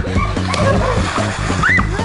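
Water splashing and sloshing in an inflatable backyard pool as a person scrambles out of it. Steady background music with voices and laughter plays over it.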